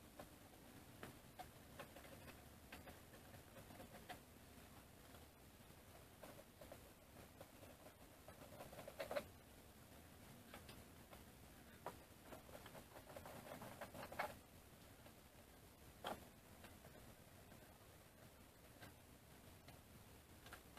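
Faint, scattered small metallic clicks and ticks of screws being backed out of an aluminium CNC table frame with a hex key and set down, with a few sharper clicks about 9, 14 and 16 seconds in.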